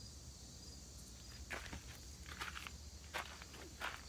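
Faint footsteps on gravel, a few irregular steps in the second half.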